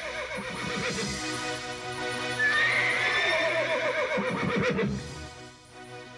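A horse whinnying over background music, in wavering falling calls that grow louder about halfway through and die away about five seconds in.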